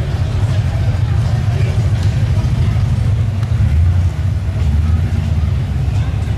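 Car engine's deep exhaust rumble at low revs, loud and steady, with no sharp rev-up.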